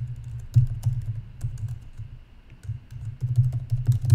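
Typing on a computer keyboard: quick runs of keystrokes with a low thud under each, easing off briefly about halfway through.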